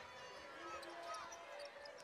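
Faint court sound of a basketball game in play: a basketball being dribbled on the hardwood court, with a few short high squeaks of sneakers, under low arena noise.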